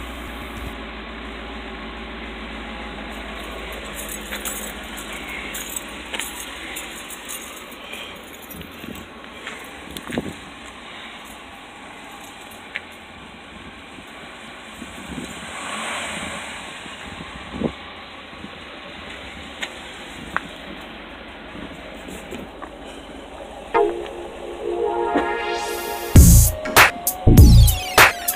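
Chevrolet Corvette's V8 idling as a low, steady rumble just after starting, with scattered clicks and knocks on top. Music comes in near the end.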